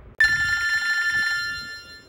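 A single bell-like ring that starts suddenly about a fifth of a second in. Several high steady tones hold together and die away over about a second and a half.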